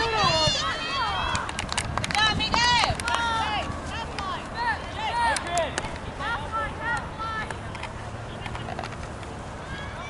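Scattered high-pitched shouts and calls from youth soccer players and sideline spectators, unintelligible, coming thick and fast at first and thinning out after about four seconds.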